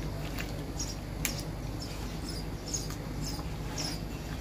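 Silicone spatula stirring raw chicken, onion and tomato with spices in a nonstick pan that is not yet on the flame: soft, scattered scrapes and clicks with no sizzle, one sharper click a little over a second in, over a low steady hum.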